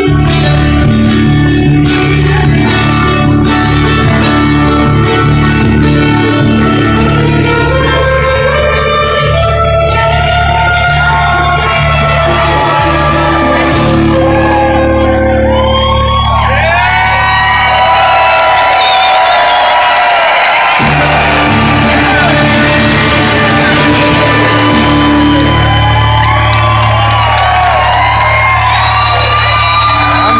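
Live band music played loud in a hall, with a twelve-string acoustic guitar among the instruments. From about halfway, voices singing and shouting rise over the music.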